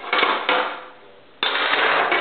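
Small metal hand tools clinking as they are lifted out of a tray and set down on a metal paper-cutter body: two sharp clinks in the first half second, then a sudden stretch of rattling and scraping from about three-quarters of the way in.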